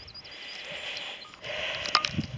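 Quiet countryside ambience. A soft, steady rushing noise grows louder in the second half, faint high bird chirps come in the first half, and a single click falls near the end.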